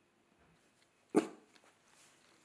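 A dachshund barks once, a single short bark about a second in.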